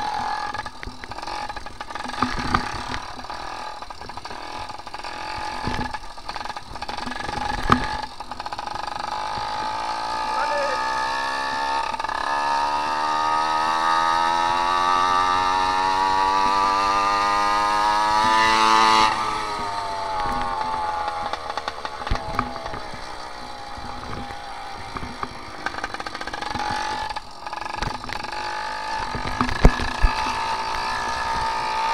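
Motorized bicycle's small two-stroke engine running under way. Its pitch climbs steadily for several seconds as the bike picks up speed, then drops sharply about two-thirds of the way through and settles lower. A few sharp knocks come through the frame.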